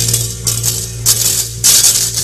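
Four sharp metallic clashes about half a second apart, typical of the kecrek, the stacked metal plates a wayang golek dalang strikes to cue the gamelan, over a steady low ringing tone from the ensemble.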